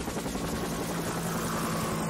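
Helicopter rotor blades chopping rapidly and steadily over a low, constant hum.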